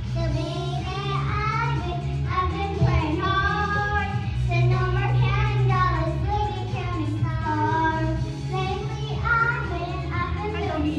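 A young girl singing into a corded microphone over recorded backing music, her melody rising and falling over a steady low bass.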